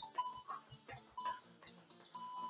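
Interval timer giving short countdown beeps at the same pitch about a second apart, counting down the last seconds of a Tabata work interval. Soft thuds of quick footwork come between the beeps.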